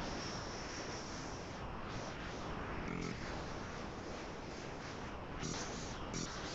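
Battery-powered eBrush marker airbrush running, blowing air across the marker's nib to spray ink onto fabric: a steady hiss.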